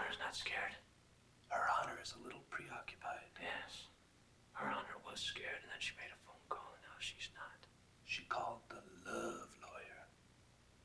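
Hushed whispered speech, in short phrases with brief pauses between them.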